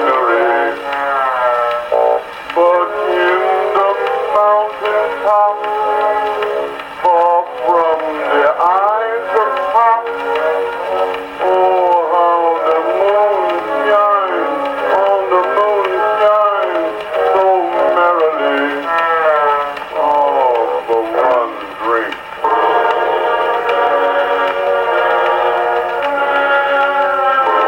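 A Pathé vertical-cut disc record playing on an Edison disc phonograph: an old acoustic recording of a song with a male voice and band accompaniment, its melody sliding in pitch. Near the end the band holds steady chords.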